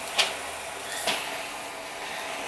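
Steam iron hissing steadily as it is passed over the heat-moldable batting, with a sharp click just after the start and a short, louder burst of hiss about a second in.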